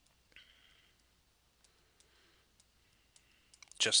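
Faint, scattered light clicks and taps of a stylus on a tablet surface while handwriting.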